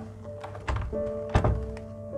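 A single sharp thunk a little past a second in, after a smaller click, at a hotel room door's metal lever handle as a do-not-disturb hanger and key card are handled on it. Background music with sustained notes runs underneath.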